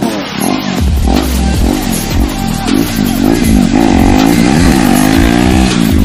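KTM Duke single-cylinder motorcycle engine revving as it rides past, its pitch rising and falling again and again through the corner, with background music playing over it.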